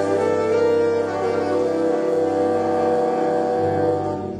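A school jazz band, saxophones and brass over piano and bass, holding one long, steady chord, the closing chord of a piece.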